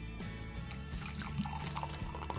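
Carbonated cider poured from a bottle into a glass, fizzing and foaming up, heard faintly under steady background music.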